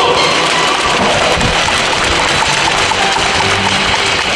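Loud, steady stadium crowd noise with PA music faintly underneath.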